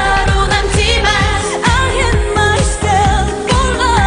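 Two women singing a K-pop song over a pop backing track with a steady beat.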